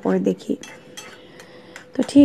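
A metal spoon stirring egg soup in a metal pot, knocking and scraping against the pot's side with a few light clinks spread through the stretch.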